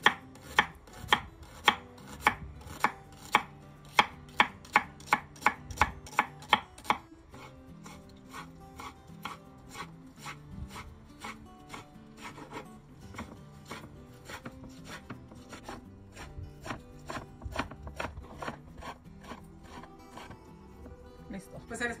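Chef's knife chopping on a wooden cutting board: sharp, regular knocks of the blade slicing through white onion, about two a second and then a little faster, for the first seven seconds. After that come softer, quieter cuts as roasted poblano chile is sliced into strips.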